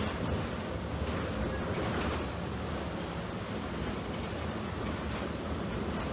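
Cabin ride noise of a New Flyer DE60LFR articulated diesel-electric hybrid bus under way: a steady low rumble of drivetrain and road, with occasional light rattles of the body and fittings.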